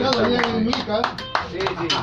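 A small group clapping unevenly while several men talk and call out over one another, at the close of a sung vals.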